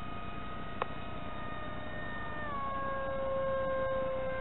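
Brushless 2205 2300Kv motor spinning a 5045 two-blade propeller, a steady whine heard from a camera on board the plane in flight. About two and a half seconds in the pitch steps down as the motor slows. A short click comes a little before one second.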